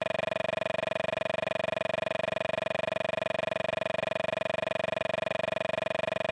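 A steady electronic buzz: one unchanging tone that pulses rapidly and evenly.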